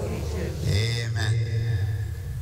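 A man's voice chanting a liturgical prayer, moving into one long held note about a third of the way in.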